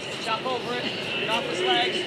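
Voices calling out over steady crowd noise.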